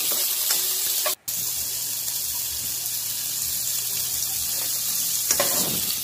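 Chopped onion, ginger and tomato sizzling in hot oil in a nonstick pot as a spatula stirs them. The sizzle cuts out completely for a moment about a second in, then carries on steadily.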